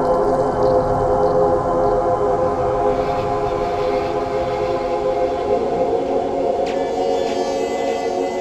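Ambient electronic music: a sustained droning chord of held tones, with a brighter high layer coming in near the end.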